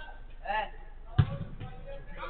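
A single sharp thud of a football being struck, about a second in, in a large enclosed hall, preceded by a short shout from a player.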